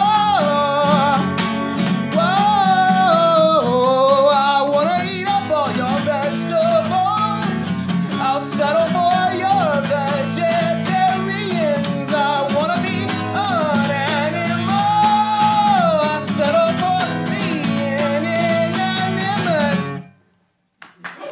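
Singer with guitar performing a song, holding long, sliding vocal notes over steady chords; the music stops abruptly at the end.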